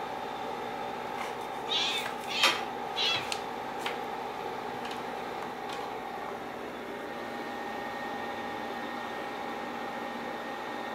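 Tabby cat giving a few short meows, clustered between about two and three seconds in, over a steady background hum.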